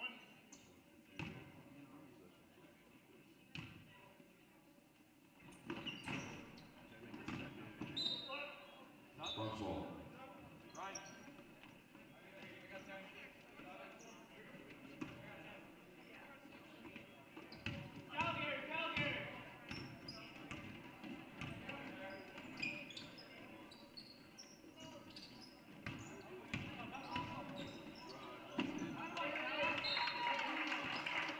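A basketball bouncing on a hardwood gym floor during play, heard as irregular thuds, with scattered voices of players and spectators around it.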